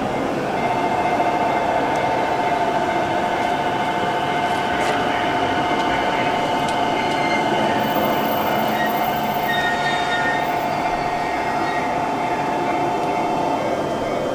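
An electric commuter train standing at a station platform: a steady high hum in two close tones, held for about thirteen seconds and stopping just before the end, over the station's background noise.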